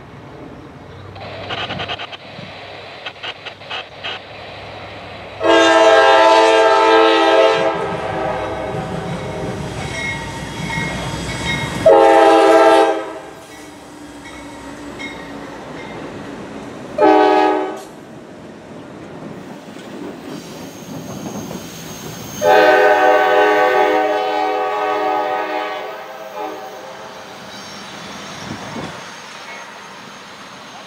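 Nathan K5LA chime horn on a Norfolk Southern GE C44-9W diesel locomotive, sounded four times as the light engines approach and pass: a long blast, a shorter one, a brief one and a final, longest one, roughly the long-long-short-long grade-crossing signal. The diesel engines rumble as the locomotives roll by between the blasts.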